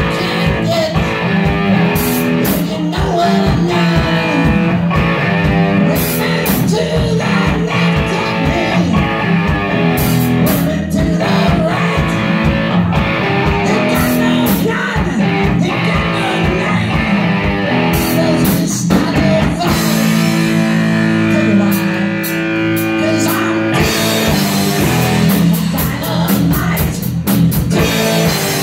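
Live rock band playing: electric guitars and a drum kit, with a singer on microphone. About twenty seconds in, the drums thin out under held guitar chords for a few seconds, then come back in with fast hits.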